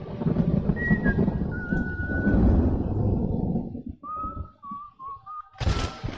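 A few whistled notes, thin and wavering, over a low rumbling noise that dies away about three and a half seconds in. Near the end there is a sudden loud noisy burst.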